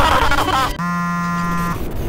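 A man's excited voice, cut off under a second in by a flat, steady electronic buzz that lasts about a second: a glitch sound effect on a cut to the logo card.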